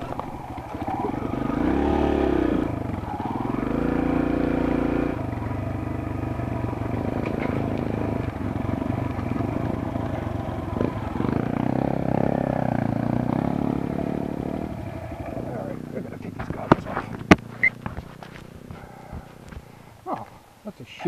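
A Kawasaki KLX140G dirt bike's small four-stroke single-cylinder engine revs up and down on a rocky trail. Near the end it eases off, and a few sharp knocks come as the bike bounces over the rocks.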